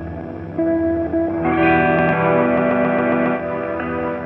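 Electric guitar played through a Hologram Electronics Infinite Jets resynthesizer and other effects, making an ambient drone of long held notes. New notes come in about half a second in, and a louder, brighter swell of layered notes builds through the middle before settling back near the end.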